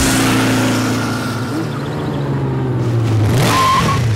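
Honda CBR sport motorcycle's engine running at a held, steady pitch as it rides past, then dropping as it pulls up, with a brief high tyre squeal near the end.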